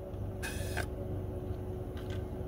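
Steady low hum inside a car, with a faint steady tone over it. About half a second in there is one short hiss lasting under half a second.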